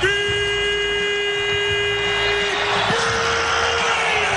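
A horn-like lead note in the instrumental beat: one held pitched tone, slid up into, sustained about two and a half seconds, then a slightly higher note about three seconds in.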